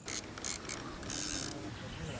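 Fishing reel clicking a few times, then a short whirr of line running out about a second in.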